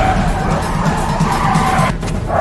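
Car tyres screeching as a car skids, with film score underneath.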